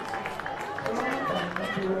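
Faint outdoor field ambience with distant voices from the players. A man's commentating voice comes in near the end.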